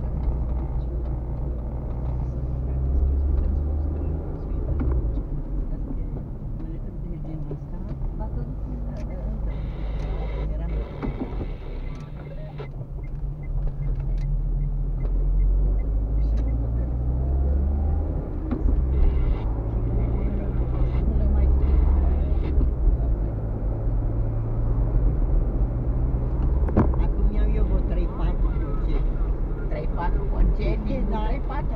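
Car engine and road noise heard from inside the cabin while driving: a steady low rumble that rises and falls a few times as the car speeds up and slows down.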